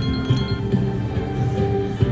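Slot machine playing chiming win tones as a small line win counts up on the meter, over the game's steady background music.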